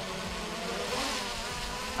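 Quadcopter drone's motors and propellers buzzing overhead as it descends, working hard under the weight of a mobile phone strapped to it; the buzz swells a little about a second in.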